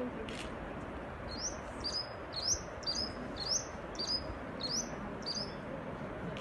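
A songbird repeating a short, high, upward-sweeping chirp about eight times, roughly two a second, over a steady background hiss.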